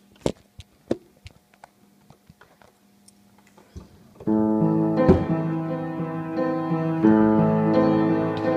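A few sharp knocks and taps as the phone is handled and set down against a wooden upright piano, then about four seconds in the piano starts: slow chords and a melody played by hand, ringing on with sustain.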